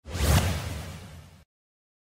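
Edited-in whoosh sound effect with a low rumble beneath it, swelling quickly and dying away over about a second and a half.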